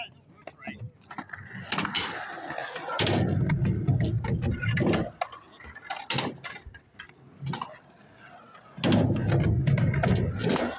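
Skateboard wheels rolling over concrete with a rough rumble, twice for a couple of seconds each, with sharp clacks and knocks of the board between.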